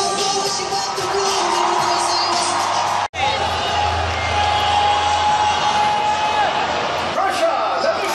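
Music over the arena PA mixed with crowd cheering and shouting. The sound cuts out for an instant about three seconds in, and a long held note follows for about three seconds.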